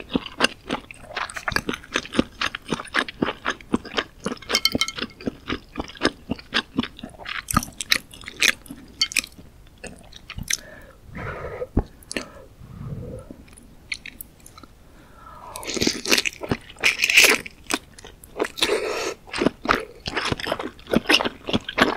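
Close-miked chewing of soft Korean fish cake (eomuk) in spicy broth: rapid wet mouth clicks and squishes, slowing and softening around the middle, then a louder, noisier stretch of eating sounds about three-quarters of the way through.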